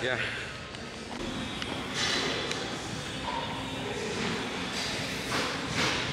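Gym ambience in a large room: indistinct voices and background music, with a couple of short hissing bursts about two seconds in and near the end.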